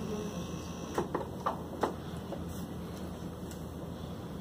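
Four light clicks and knocks in quick succession about a second in, from equipment being handled on a tabletop, over a steady low hum.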